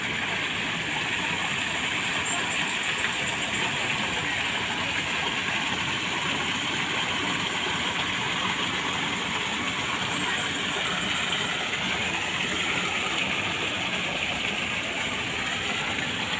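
Steady rush of a small artificial waterfall pouring over rocks into a fish pond.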